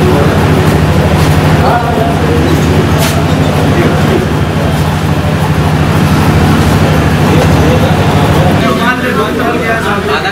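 A motor vehicle engine idling steadily close by, a low, evenly pulsing hum. Its note drops away about three-quarters of the way through.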